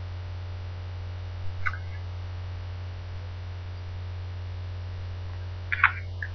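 Steady low electrical mains hum, with a faint short sound about one and a half seconds in and a couple of short clicks near the end.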